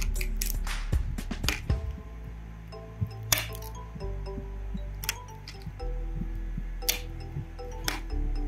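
Background music with a steady bass line, over which come about ten sharp, irregular clicks and snaps of PET plastic support material being broken off a freshly 3D-printed fan rotor.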